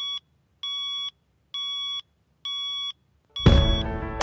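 Phone alarm beeping: steady high-pitched beeps about half a second long, repeating roughly once a second. Near the end loud music comes in and cuts off the last beep.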